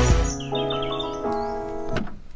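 Intro background music: sustained electronic keyboard chords, with a few high chirping notes in the first second.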